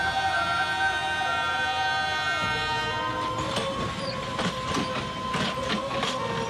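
A train horn sounding long and steady. About halfway through, a passenger train's wheels start clacking over the rail joints, two or three knocks a second, with a film-score music bed underneath.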